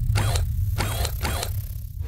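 Mechanical sound effects for an animated robot creature: three short rasping bursts, the second and third close together, over a steady low rumble.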